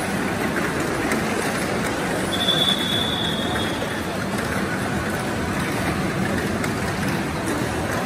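Tamiya Mini 4WD cars running on a multi-lane plastic track: a steady, dense whirring and rattling of their small electric motors and rollers. A high steady whine rises above it about two seconds in and lasts nearly two seconds.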